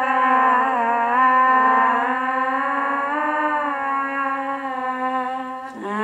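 Layered, looped female voices holding wordless notes, run through a Boss VE-20 vocal processor and loop pedal, several pitches sounding at once. Near the end the sound dips briefly and a new, lower held note comes in.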